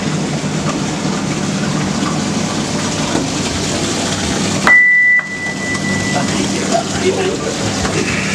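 Mine shaft cage moving down the shaft: a steady rushing noise of travel and falling water over a low hum. About halfway through, a short loud high beep sounds once and fades.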